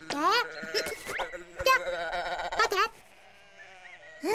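Cartoon sheep bleating, a few wavering bleats in the first three seconds, then quieter for the last second.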